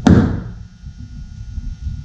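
A hammer tapping a scribe to punch a small divot into the fiberglass roof: one sharp tap at the very start, its ring fading within about half a second.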